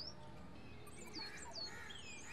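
Faint birdsong: a few quick high chirps sliding down in pitch about a second in, with softer chirping around them.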